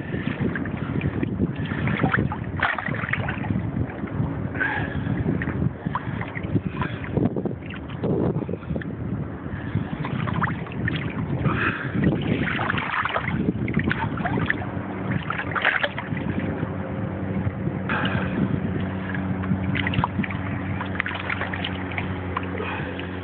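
Small sea waves sloshing and splashing close to a phone held at the water's surface, with some wind on the microphone. A steady low hum comes in about two-thirds of the way through and stays under the water sound.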